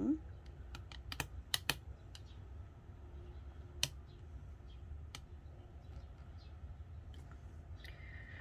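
Scattered light clicks and taps of a plastic cutter being handled and set in place on rolled-out clay: several in quick succession in the first two seconds, then two single ones, over a faint low hum.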